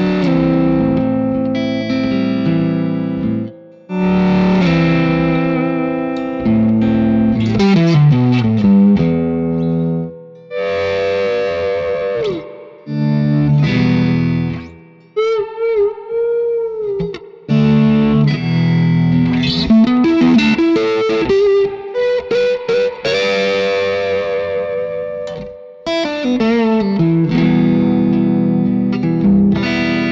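Single-coil electric guitar played through a Supro Boost pedal, its volume worked by an expression pedal: chords and notes swell in and fade away again and again, up to the boost's maximum gain, which adds some grit. About halfway through comes a held note with wide vibrato.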